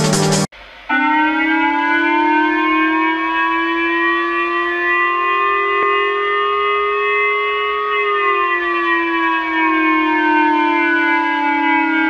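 Japanese J-Alert civil protection (national protection) siren warning of a missile launch, played through a television's speaker. One long tone climbs slowly in pitch for about seven seconds, then drops back over a second or two and holds.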